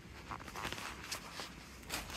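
Faint, scattered soft taps and rustles, about five of them over low room noise, from someone moving about and handling the phone.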